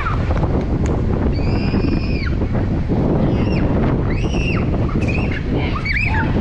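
Wind buffeting the microphone in a steady low rumble. A few short high-pitched calls ring out over it, each falling off at the end, about a second and a half, three and a half, and four seconds in.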